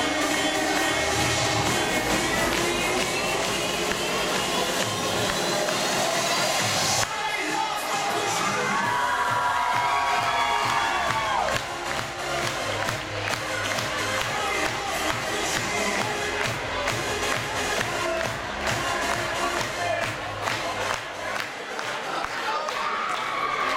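Loud dance music with a rising sweep that cuts off abruptly about seven seconds in. After a few seconds of voices, an audience claps and cheers through the rest.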